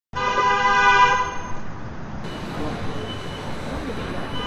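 A horn sounding one steady note for about a second, then fading out, followed by steady street and traffic noise.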